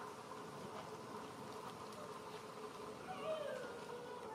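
Faint outdoor ambience: a steady low drone, with a brief faint falling call about three seconds in.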